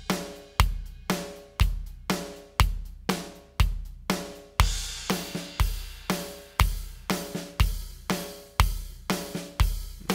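EZdrummer 2 virtual drum kit playing back a song-builder drum pattern: a steady groove of kick, snare and cymbals, with a deep kick hit about once a second.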